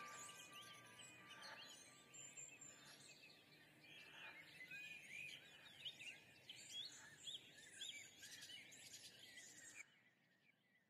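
Very faint high chirping, bird-like calls over a low hiss, cutting off suddenly near the end.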